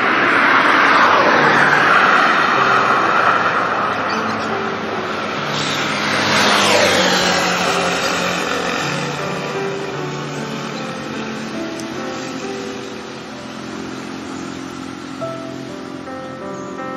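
Soft music with sustained notes under the whooshing sound of passing vehicles: one swells in the first seconds, another passes about six seconds in with a falling pitch, then the noise fades.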